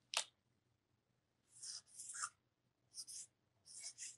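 Marker pen writing initials on a metal plate: faint, short scratchy strokes in quick groups, starting about a second and a half in, after a brief soft sound at the start.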